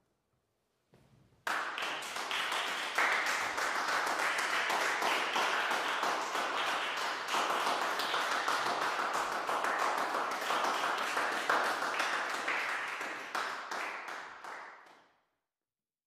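Applause, starting suddenly about a second and a half in, holding steady, then dying away near the end.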